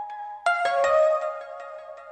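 Intro music of chiming, bell-like electronic tones; a new chord sounds about half a second in and rings on.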